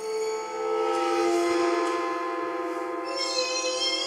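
Improvised sound poetry: sustained, bell-like ringing tones from a bowed instrument and voice, wavering in pitch, with high shimmering overtones joining about three seconds in.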